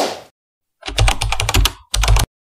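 Computer keyboard typing sound effect: a quick run of key clicks, about ten a second, lasting about a second, then a short burst again near the end. It opens with a brief sharp hit that fades quickly.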